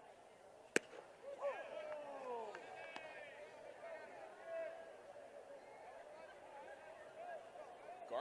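A single sharp crack of a baseball impact, under a second in, followed by scattered fans shouting from the stands.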